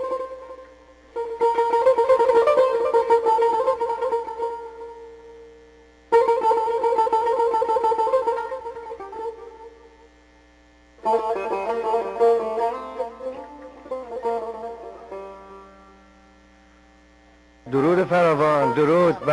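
Tar played solo in three phrases. Each starts with a burst of fast plectrum strokes and tremolo and then fades away.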